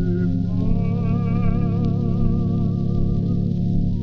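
Early Pathé Cellodisc 78 rpm record playing: a sung melody holds one long note with vibrato over sustained accompaniment, with the narrow, muffled sound of an old recording.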